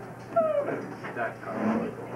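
Wordless human voices: a short pitched call that falls in pitch about half a second in, then a few more brief, indistinct vocal sounds.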